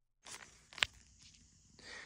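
Faint room noise with a single short, sharp tap a little under a second in, after a brief stretch of dead silence at the start.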